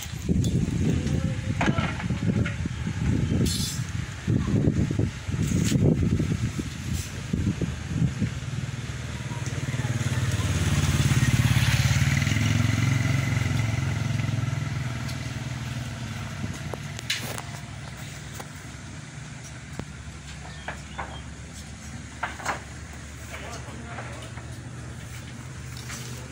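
A motor vehicle's engine hum swells to its loudest about eleven seconds in, then slowly fades away. It follows several seconds of irregular low rumbling.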